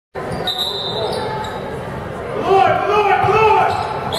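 Basketball game sounds in an echoing gym: a ball bouncing on the hardwood court, a high steady squeak lasting about a second near the start, then voices calling out loudly in the second half.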